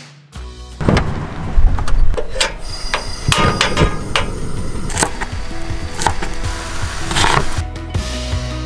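Background music over kitchen sounds: irregular sharp knocks and clatter of cookware on a gas stove, and a chef's knife chopping on a plastic cutting board.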